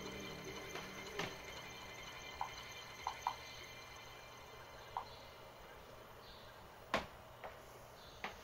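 Clicks of an Atari 1040ST mouse being operated: several short soft pips in the middle and a few sharp clicks, the loudest near the end. Under them, the faint tail of held synthesizer tones fades away.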